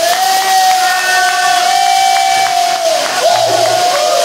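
A voice holding one long, loud shouted note that slides up at the start, then breaking into shorter wavering calls about three seconds in, over crowd noise and cheering.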